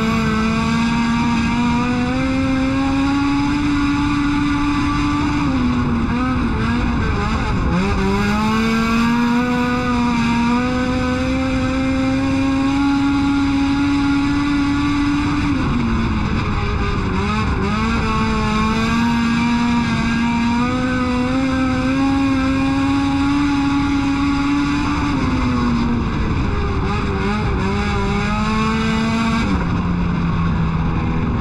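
K20 four-cylinder engine of a K-swapped Honda EG hatchback race car at full throttle, heard from inside the cockpit. It is held in second gear. The revs climb slowly along each straight, then drop and waver briefly as the throttle comes off for the turns, three times over, on a muddy track where the tyres were spinning.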